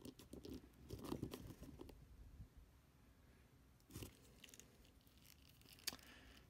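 Mostly near silence with a few faint clicks and rubbing sounds from hands handling a Mafex RoboCop plastic action figure, a small cluster in the first second and single clicks about four seconds in and near the end.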